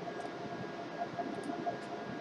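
Steady low background hum and hiss with faint constant tones: room tone, with a few faint ticks around the middle.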